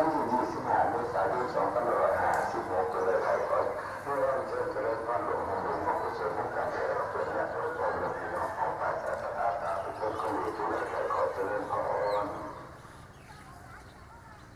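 A continuous stream of human voices that drops away sharply about twelve seconds in.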